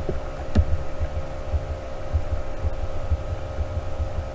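A steady electrical hum with irregular low thuds, about two or three a second, and a single sharp click about half a second in.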